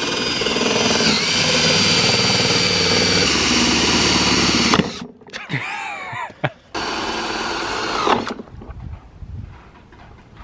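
A cordless drill boring through a hard plastic ATV panel, its motor whine dipping in pitch briefly about a second in as the bit loads up. It runs for about five seconds, stops, then runs again for about a second and a half.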